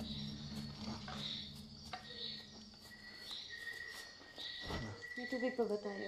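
Night insects chirping: a steady high trill with repeated chirps above it, as a low drone of film music dies away in the first second or two. There is a short dull thump about four and a half seconds in, and a voice near the end.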